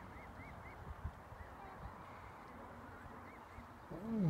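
Canada goose goslings peeping faintly, short rising-and-falling peeps, three in quick succession and then a few scattered ones. An adult Canada goose starts honking loudly at the very end.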